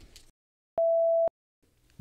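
A single electronic beep: one steady, mid-pitched pure tone lasting about half a second, switching on and off abruptly.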